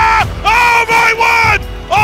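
Long, drawn-out excited yells from a basketball commentator as a buzzer-beater goes up, over crowd noise and a backing music track.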